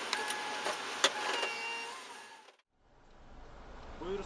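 Dash cam recording of a car on the road: road and traffic noise with a few brief steady tones and a sharp click about a second in, fading out about two and a half seconds in. A low rumble of traffic builds near the end.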